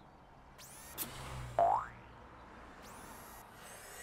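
Cartoon sound effects for a robot's charging cabinet opening. There is a short falling electronic tone about one and a half seconds in, the loudest sound, over a brief low hum, with soft high sweeps before and after it.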